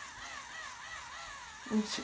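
Small battery-powered facial cleansing brush running on high: a thin motor whine that rises and falls in pitch about twice a second. It sounds cheap.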